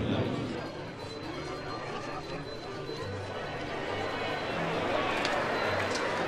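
Low, indistinct background murmur of voices with room noise. It holds fairly steady and swells slightly toward the end.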